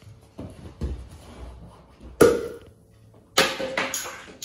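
Homemade baking-soda-and-vinegar bottle rocket launching: a single sharp pop about two seconds in as carbon dioxide pressure in the sealed bottle forces the lid off and drives the rocket up. About a second later comes a second, longer burst of noise with knocks.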